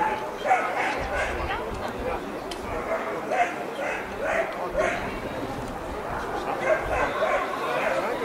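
A German Shepherd whining and yipping in short, repeated bursts while heeling beside its handler, with voices in the background.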